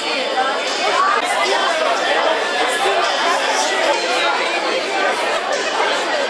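Crowd chatter: many diners talking at once at banquet tables, a steady hubbub of overlapping conversation in a large hall.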